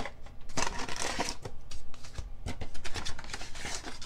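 Paper and thin card being handled: a rules booklet and packaging rustling and flapping, with frequent light taps and clicks.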